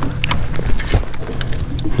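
A freshly landed fish flopping on a boat deck, with a run of irregular knocks and slaps as it thrashes against the deck and the angler's hands.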